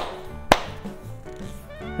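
Two sharp hand claps about half a second apart near the start, over quiet background music.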